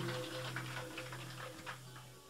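A steady low hum with a few faint ticks, fading down as a live recording ends.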